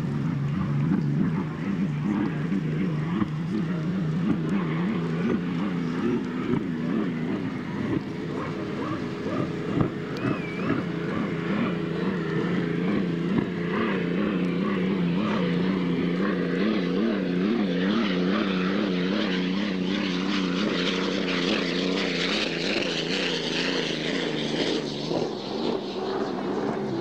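Unlimited hydroplane engines running at racing speed: a steady, loud drone whose pitch wavers as the boats run by. A higher whine builds in the second half.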